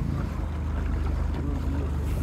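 Outboard motor of a following boat running steadily with a low hum, with wind on the microphone.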